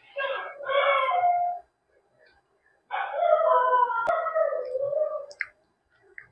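A dog whining in two long, high-pitched, wavering howls, the second one longer.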